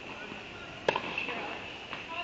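A single sharp pock of a tennis ball being hit, about a second in, echoing briefly in the indoor tennis hall, over a steady high-pitched hum.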